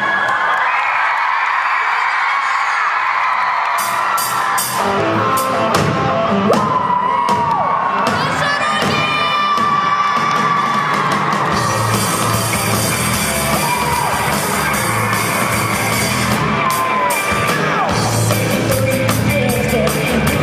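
Live rock band of guitars, bass, keyboards and drums starting up, with the audience screaming and cheering. The sound is thin with little bass for the first few seconds, the instruments fill in after about four seconds, and the full band with drums comes in about twelve seconds in.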